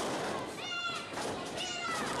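High-pitched yells from spectators in an echoing hall: two falling shouts about a second apart over general crowd noise.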